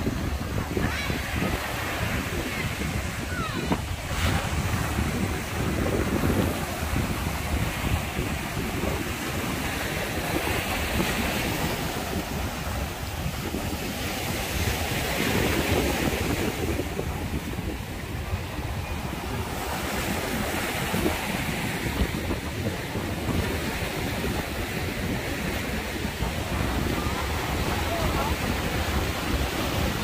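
Sea waves breaking and washing up a sandy, pebbly beach, the surf swelling and easing every few seconds. Wind buffets the microphone with a low rumble.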